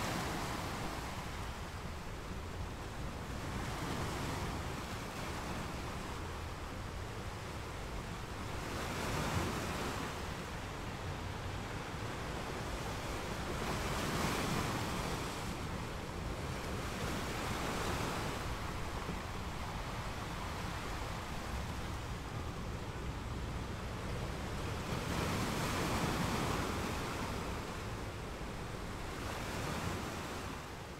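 Sea water washing in a steady rush that swells and fades every four to five seconds, like waves surging.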